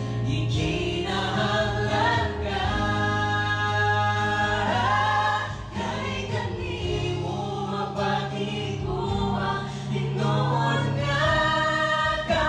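A small mixed group of men's and women's voices singing a Cebuano gospel song in harmony into microphones, over a keyboard holding low sustained notes. A long held chord comes a few seconds in.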